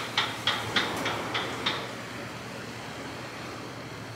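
Wind noise on the microphone, steady and even. A run of quick clicks, about four a second, sounds over it for the first two seconds and then stops.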